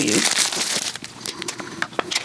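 Paper wrapper crinkling and tearing as it is pulled off a sardine tin, loudest in the first second, then a few light clicks as the tin is handled.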